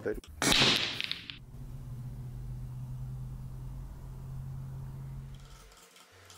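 A loud hiss lasting about a second, starting about half a second in, followed by a steady low hum that stops near the end.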